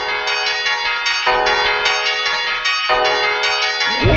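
Music of bell-like chimes: three sustained chords, each held about a second and a half before the next sounds.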